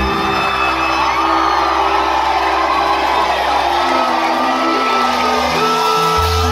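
Live country-rock band playing, with fiddle, acoustic guitar, bass and drums holding sustained notes, and the audience whooping over the music.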